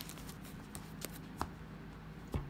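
A tarot deck being shuffled by hand: faint, irregular clicks and slides of the cards.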